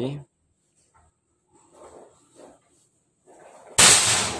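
A PCP air rifle in the FX Crown style, with a 500cc air tube, fires a single shot near the end: a sudden sharp report that dies away over about a second.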